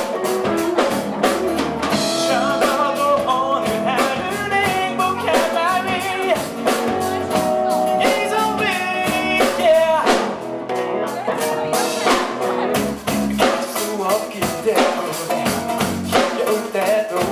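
Rock band playing live: electric guitars and a drum kit keeping a steady beat, with a male voice singing into the microphone.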